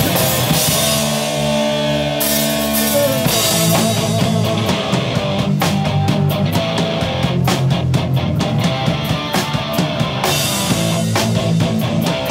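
A live punk rock band playing loud electric guitars and a drum kit. For about the first three seconds the guitars hold a ringing chord while the drums stop. Then the full band comes back in with fast drumming and guitar riffing.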